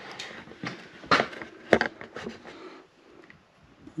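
Handling noise from a handheld camera being carried: four or five sharp clicks and knocks in the first couple of seconds over faint rustling, then it goes quieter.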